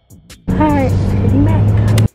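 A Mercedes-Benz car on the move, heard loudly inside the cabin: a steady low engine and road hum with a rush of wind noise, with a voice calling out over it. It starts suddenly about half a second in and cuts off abruptly at the end.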